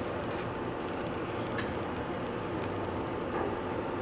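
Automatic pancake-dispensing machine running steadily, its motor and conveyor rollers turning as a freshly cooked pancake is carried out.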